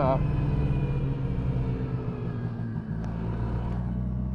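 Yamaha Inviter snowmobile's two-stroke engine running, a steady low hum; about three seconds in it eases off to a lower, steadier note as the sled slows.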